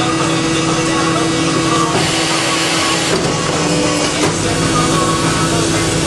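Extrusion blow moulding machine running with a steady mechanical hum, and a louder hiss for about a second starting two seconds in.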